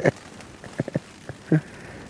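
Light rain pattering on a cuben-fibre MLD Trailstar tarp, a soft steady hiss with a few sharp drop ticks about a second in.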